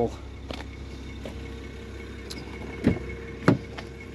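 Car door being opened: a sharp click of the handle and latch about three and a half seconds in, over a steady low hum from the car.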